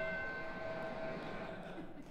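A single held musical note with several overtones, fading out over about two seconds: the closing tone of the plot-summary video playing over the hall's speakers.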